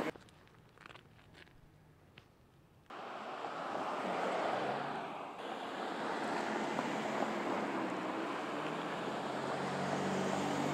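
Very quiet for about the first three seconds, then a steady rushing outdoor noise cuts in suddenly and holds. A low steady hum joins it near the end.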